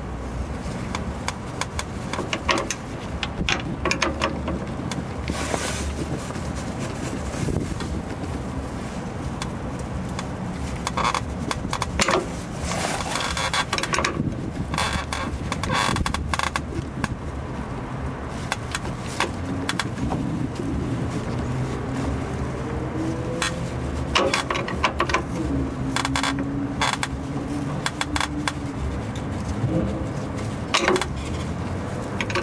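A wrench clicking and scraping on the metal flare nut of a rear brake line fitting as it is worked loose. Underneath runs a steady low background vehicle hum, with an engine note rising in pitch in the second half.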